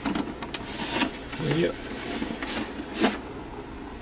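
Hard plastic Soundwave helmet replica being handled and turned over by hand: a few short rubs and light knocks of plastic, the strongest about three seconds in.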